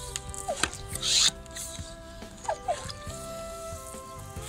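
Hand plunger pump of a 4-litre VOLAT compression garden sprayer being worked to pressurise the water-filled tank, with a loud airy whoosh from a stroke about a second in. Background music plays throughout.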